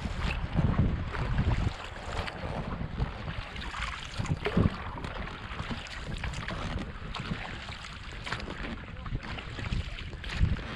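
Breeze buffeting an unshielded camera microphone in gusty rumbles, over water lapping and splashing around an inflatable rowing dinghy.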